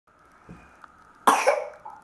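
A single loud, short cough, close to the microphone, about a second into the clip.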